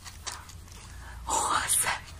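A person's soft whispered voice in a few breathy bursts, loudest in the second half.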